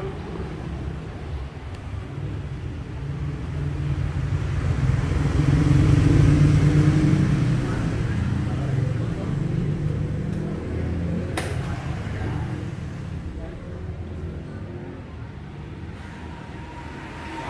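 A motor vehicle's engine passing by on the road, its rumble swelling to a peak about six seconds in and then fading away. A single sharp click about eleven seconds in.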